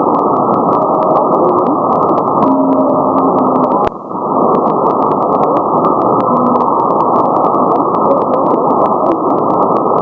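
Shortwave receiver tuned to 6180 kHz giving a steady, muffled hiss of band noise with frequent crackling static clicks and faint passing tone fragments. A sharp click about four seconds in briefly drops the level.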